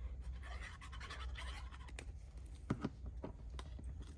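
Liquid craft glue being squeezed from a squeeze tube along the edge of a cardstock panel: a soft hiss for the first two seconds or so, then a few light clicks and taps as the cardstock is handled and pressed shut.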